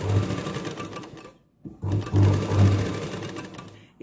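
Sewing machine stitching through a pinned blouse fabric and its lining. It runs, stops briefly about a second and a half in, then runs again and slows to a stop near the end.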